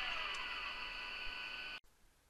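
A steady high-pitched whine with a few faint falling tones, slowly fading, then cut off abruptly near the end.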